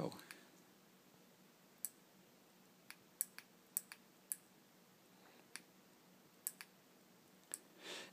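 The push-button of a small handheld laser pointer clicking on and off, about ten faint, sharp clicks at irregular intervals over near-silent room tone.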